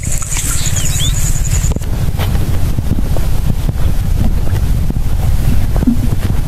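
Wind buffeting the microphone in open country, a loud low rumble. A faint high chirping stops a couple of seconds in.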